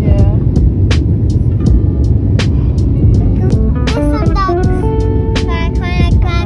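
Background music with a steady beat playing over the steady low rumble of a jet airliner cabin in flight.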